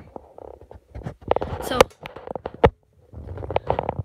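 A boy's voice saying "so" among rubbing noise and sharp clicks from a handheld phone's microphone, with a brief quiet gap shortly before the end.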